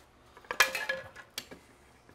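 Metal clink with a brief ringing about half a second in, then a single sharp click, as a board studded with steel nails is handled into a steel bench vise.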